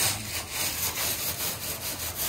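Grass hand broom scrubbing the dusty mesh grille of an air conditioner's outdoor unit in quick, repeated scratchy strokes.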